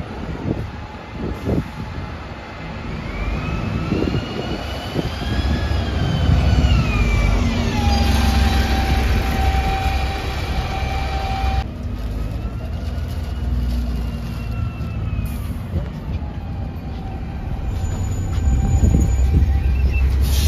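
Diesel engine of a Wright Gemini 2 double-decker bus on a VDL DB300 chassis, running steadily at a stand with a low rumble. A higher whine rises and falls over it twice.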